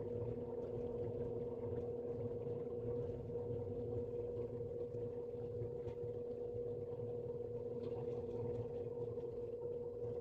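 Steady machine hum at one constant pitch over a low rumble, unchanging throughout, with faint scattered rubbing of a cloth polishing a metal ring.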